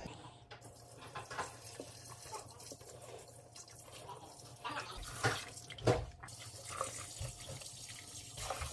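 Water poured from a plastic pitcher into a small glass aquarium, splashing onto the substrate, with two sharper, louder moments about five and six seconds in.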